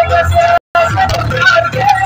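Loud dance music with a heavy bass line and held melody notes, cutting out completely for an instant about half a second in.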